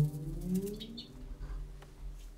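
The last notes of the acoustic guitar and double bass ring on and fade right after the song's final chord. Birds are heard under the fading tail: a few short chirps about a second in and a dove cooing.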